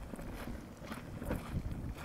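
Wind buffeting the microphone, heard as a low, uneven rumble.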